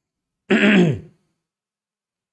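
A man clears his throat once, a short rough throat-clearing cough lasting about half a second, starting about half a second in, its pitch falling.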